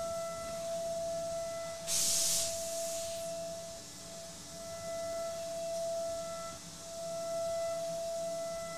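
DATRON high-speed CNC milling spindle cutting slots in aluminium with a 2 mm end mill, giving a steady high-pitched tone. A brighter overtone comes and goes in a repeating pattern every few seconds as the cut proceeds, and a short loud hiss sounds about two seconds in.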